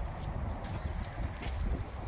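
Wind buffeting the phone's microphone: an unsteady low rumble with a faint rushing hiss.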